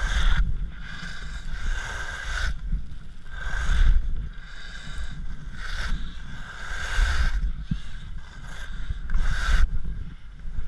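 Skis scraping and swishing over packed, chopped snow in a rhythm of turns, a surge every second or two, with wind rumbling on the microphone.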